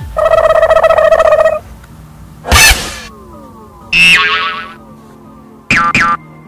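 A string of cartoon-style comedy sound effects: a wavering pitched tone held for about a second and a half, a short noisy hit, then a tone that slides down and trails away, with a quick double blip near the end.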